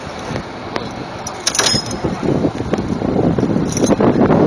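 The engine of the crane holding the bungee cage, running, getting louder about a second and a half in, with a brief metallic jingle at the same moment.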